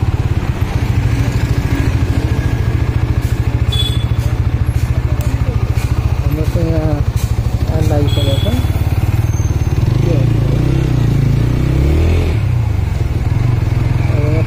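Motorcycle engine running as the bike is ridden through a street, under a steady low rumble. Voices come through briefly in the second half.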